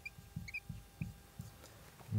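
Marker pen squeaking faintly on a whiteboard in a few short high chirps as words are written, mostly in the first second, with soft low knocks in between.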